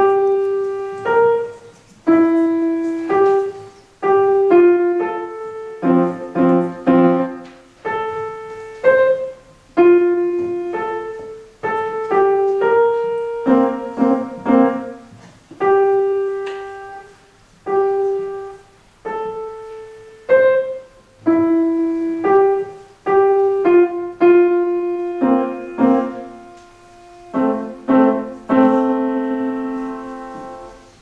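Grand piano played solo: a slow, simple melody of separate notes in short phrases over a light accompaniment. It closes on a held chord that dies away near the end.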